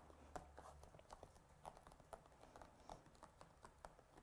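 Near silence with faint, scattered light taps and clicks: fingertips pressing an inked stamp down onto card in an acrylic stamping platform.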